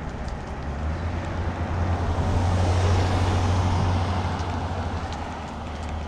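A car passing on the road: its tyre and engine noise swells to a peak about halfway through and then fades, over a steady low rumble.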